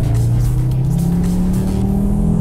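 Audi RS3's turbocharged five-cylinder engine heard from inside the cabin under hard acceleration, its note climbing in pitch.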